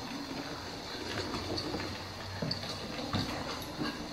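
Battery-powered toy hamster running across a hardwood floor, its small motor giving a steady whirring rattle, with scattered clicks and taps on the floor.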